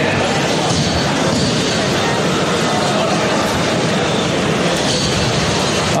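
Steady, loud din of a combat-robot fight: 30 lb robots' drive motors and spinning weapons, with no single hit standing out.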